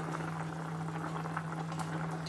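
Curry bubbling at a simmer in a pot, with many small pops, over a steady low hum.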